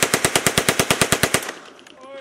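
Compact submachine gun firing a fully automatic burst, about ten shots a second, that stops about one and a half seconds in.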